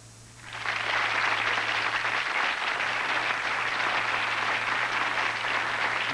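Studio audience applauding. The applause starts about half a second in, after a brief quiet gap, and holds steady.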